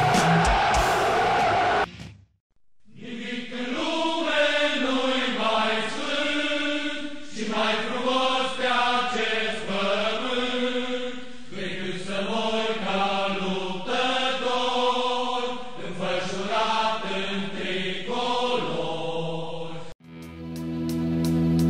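A loud roar of noise cuts off about two seconds in. After a short gap, a choir chants a slow melody of held notes, the voices moving together from one note to the next until the end.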